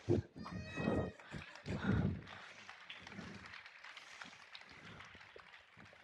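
A high, wavering vocal cry from a performer in the first two seconds, then faint shuffling and light footsteps on the stage.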